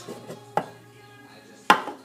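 A mug taken from a cupboard shelf with a light clink, then set down on a countertop with a single sharp knock near the end.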